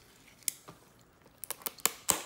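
Handling of a shrink-wrapped cardboard trading-card box and a plastic box cutter: a couple of light clicks, then a quick cluster of sharp clicks in the second half, with faint crinkling of the plastic wrap.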